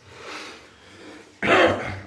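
A breath, then a man clearing his throat with a short, loud burst about a second and a half in.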